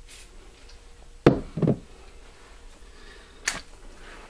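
Handling knocks on a workbench: two dull knocks in quick succession a little over a second in, then a single sharp click a little past the middle.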